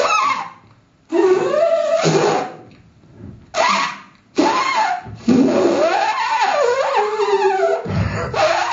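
A man performing wordless vocal sound poetry into microphones: short bursts of voice with swooping, sliding pitch, broken by brief pauses. From about five seconds in it becomes an almost unbroken run of warbling, gliding vocal sounds.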